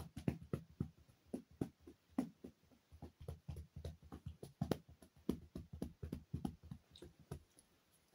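Hand massaging a dog's head and neck: faint, irregular rustling and rubbing of fingers through fur and over fabric, a few strokes a second.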